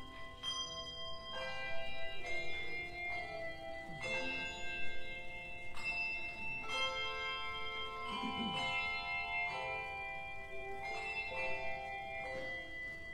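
Tuned bells playing a slow melody: each struck note rings on and overlaps the next.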